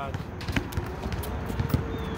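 Basketball bouncing on an outdoor hard court: a handful of irregularly spaced thuds, with voices faint in the background.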